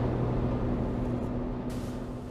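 Car cabin noise: a steady low engine and road rumble with a faint held hum, fading out near the end, with a short hiss just before it fades.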